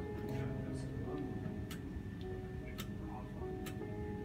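A few sharp computer mouse clicks, roughly one a second, over soft background music with held notes.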